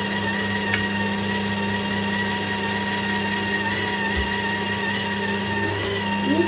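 Philips slow (masticating) juicer running steadily, a constant motor hum with a high whine over it, as citrus fruit is pressed down its feed chute.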